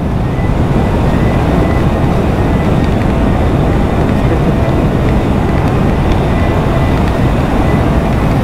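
Steady, loud rush of wind over the microphone of an Ola S1 Pro electric scooter riding at about 116 km/h, with a faint steady whine above it.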